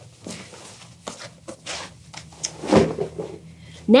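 Denim jeans rustling and swishing in quick, uneven strokes as they are handled and turned inside out, with a soft thump about three-quarters of the way in.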